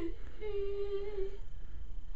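A boy's voice, unaccompanied, holding one soft, steady hummed note for about a second as the song ends, after which only a faint low room hum remains.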